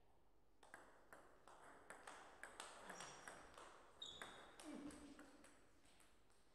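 Table tennis rally: the ball ticks off paddles and table in a quick, irregular run of light clicks. It starts with the serve about half a second in and stops about five seconds in, with a short high squeak near the end.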